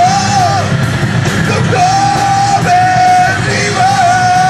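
A live rock band: electric guitars and drums, with a vocalist shouting the vocal line into a microphone. About two seconds in, the vocalist holds one long note that steps down in pitch partway through.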